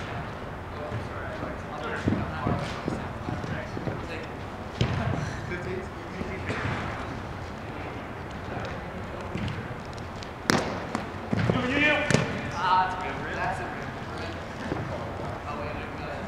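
Spikeball (roundnet) rally: a few sharp slaps of the ball being struck by hand and bouncing off the round net, the loudest about ten and a half and twelve seconds in. The hits come with players' voices in a large indoor hall.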